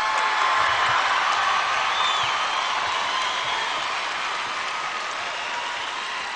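A large concert audience applauding, with scattered cheers over the clapping. The applause is loudest in the first second and slowly dies down.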